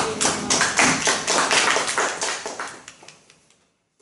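A small audience applauding, with separate hand claps heard, dying away about three seconds in.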